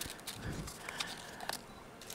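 Faint rustling and a few small clicks as hands rummage through a crumpled wrapping on a tabletop.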